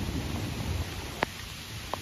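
Steady watery outdoor hiss with a low rumble in the first part, and two brief sharp ticks, one a little past a second in and one near the end.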